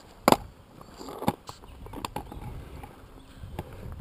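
A few sharp knocks and light scuffs of hard strikes on pavement over a faint outdoor background. The loudest knock comes about a third of a second in and a weaker one about a second later.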